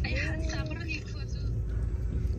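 Steady low rumble of a moving vehicle heard from inside, with a brief voice in the first second.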